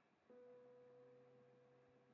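Near silence, with a faint steady held tone that begins about a third of a second in.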